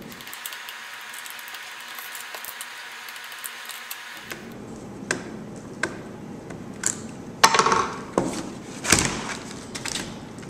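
Screwdriver and the plastic housing of a small desk fan being handled during disassembly: after a steady faint hiss for about four seconds, scattered clicks and knocks, with a louder, longer stretch of handling noise about seven and a half seconds in and a loud knock near nine seconds.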